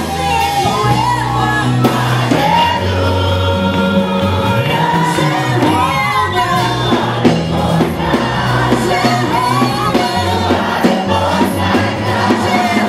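Live gospel worship music: singers leading over a band of electric guitar, drums and keyboard, with sustained low bass notes under a gliding sung melody.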